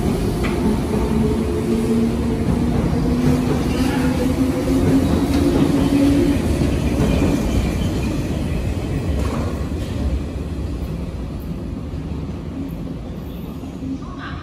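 Electric passenger train running past along a station platform: a steady rumble of wheels on rail with motor tones. It is loudest about six seconds in and fades over the last few seconds as the end of the train goes by.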